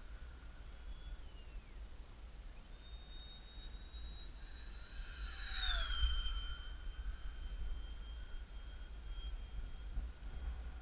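The ParkZone Habu's brushless electric ducted fan, running on a 4S lipo, whines as the jet makes a fast pass. Its high whine grows louder, then drops sharply in pitch as the model goes by about six seconds in. Wind rumbles on the microphone throughout.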